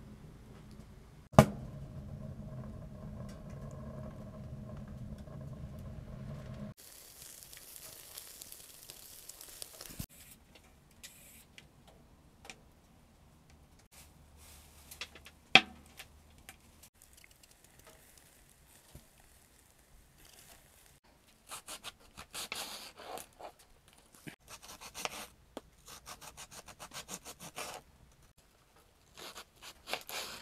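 Knife slicing red cabbage on a cutting board: quick, rhythmic cutting strokes over the last third. Earlier there is a sharp click about a second and a half in, a steady low hum and then a hiss, and another sharp knock about halfway through.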